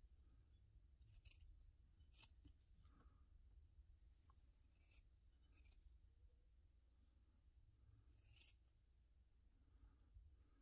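Quiet, short snips of big leather scissors cutting through a soft leather backing, a handful of separate cuts spread through, the loudest about two seconds in and near the end.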